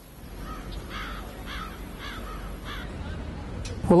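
A bird calling in a quick series of short calls, about seven in three seconds, over a low steady outdoor rumble.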